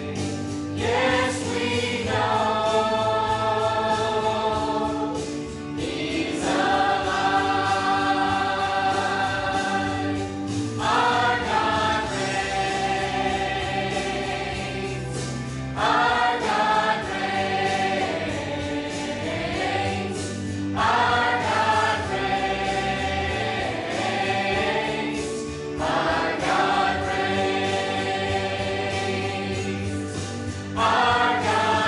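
Small church choir of mixed men's and women's voices singing a gospel song together, in phrases about five seconds long with held notes.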